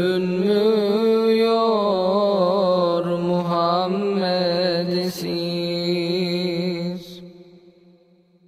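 Unaccompanied voice singing a Turkish ilahi (Islamic hymn), holding a long, wavering melismatic line with no instruments. It fades out about seven seconds in.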